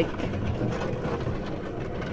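Horse-drawn sleigh travelling along a snowy track, heard as a steady low rumble of the ride.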